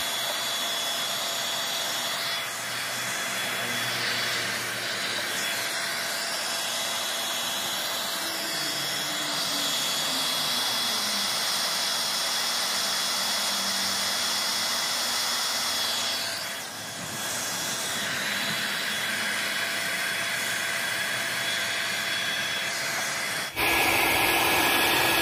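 Handheld hair dryer blowing steadily, a rush of air with a thin whine, heating a vinyl decal to soften its adhesive. The sound dips briefly about two-thirds of the way through.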